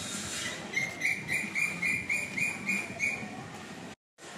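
A bird calling a run of about eight short, even, same-pitched chirps, three to four a second, starting about a second in.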